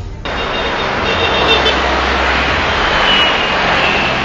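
Steady street traffic noise from passing motor vehicles, cutting in suddenly about a quarter second in as music stops.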